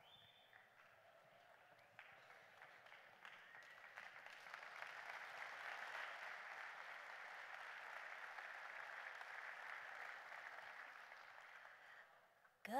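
Faint audience applause that builds in a few seconds in, holds steady, and fades out near the end.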